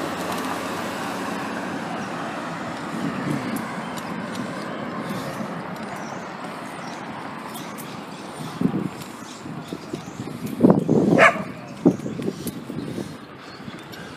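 Dogs barking a few times in the second half, over a steady rush of wind and road noise.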